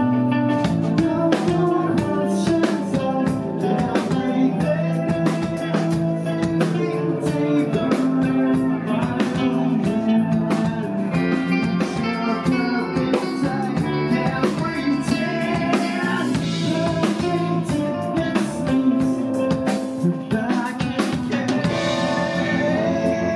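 A rock band playing live: electric guitar and a drum kit with a man singing.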